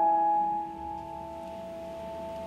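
A keyboard chord of a few steady notes is held and fades away; it drops in level about two-thirds of a second in.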